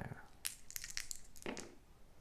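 Two six-sided dice thrown onto a play mat: a quick run of light clicks and clatter as they tumble and settle.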